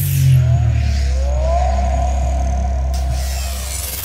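Electronic logo-reveal sound design: a deep steady rumble under a swelling whoosh, with tones that glide upward in the first half and high hiss that drops away about three seconds in.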